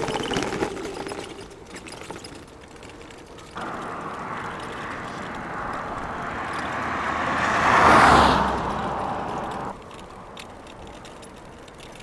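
A car driving past on the road, its noise swelling to a peak about eight seconds in, then cutting off abruptly.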